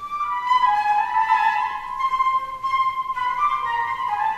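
Concert flute playing a slow, connected melody of long held notes that step gently up and down in pitch.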